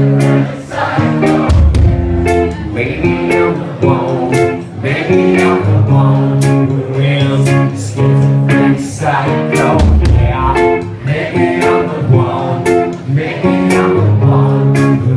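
Live rock band playing loud: electric guitar chords over bass, with drums and cymbals hitting in a steady beat.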